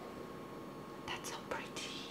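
A woman whispering softly under her breath: a few short, breathy hisses about a second in and again near the end.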